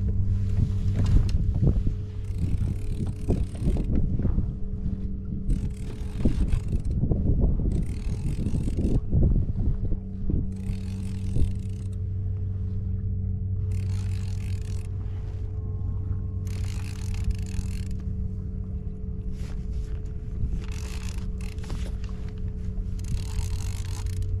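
Fishing reel being cranked in spurts to bring in a hooked fish, each stretch of winding lasting about a second, over a steady low hum.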